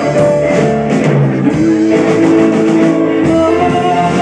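Live rock band playing with electric guitars and a drum kit, a passage with no sung words.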